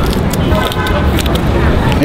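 Steady low rumble of city traffic and faint background voices in the open air, with a few short crisp clicks around the middle as a knife cuts into a raw kohlrabi.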